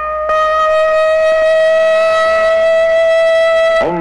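Civil defense air-raid siren sounding a sustained wail, its pitch rising slowly, for an air-raid rehearsal. It grows louder about a third of a second in.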